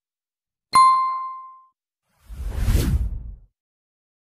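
Sound effects for an animated subscribe and notification-bell overlay. About a second in comes a bright bell ding that rings out for about a second, and about two and a half seconds in a whoosh swells and dies away.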